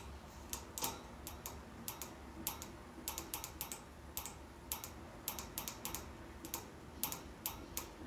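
Irregular, quick taps on a phone's touchscreen, like typing, about twenty light clicks over a few seconds, some in fast runs.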